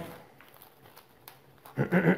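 Scissors snipping a sheet of cling film off the roll: a few faint ticks and crinkles of plastic film, with a man's voice trailing off at the start and starting again near the end.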